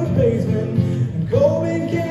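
A man singing a pop-rock song over a strummed acoustic guitar, with a long held note beginning a little past halfway.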